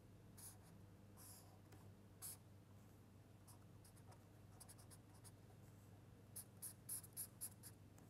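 Marker pen drawing lines on paper: faint, short pen strokes, with a quick run of several strokes near the end, over a low steady hum.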